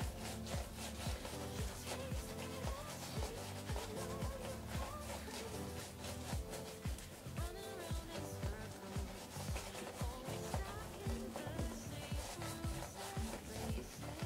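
A shaving brush scrubbing lather on a stubbled face, a quick bristly rubbing that repeats with each stroke, over background music.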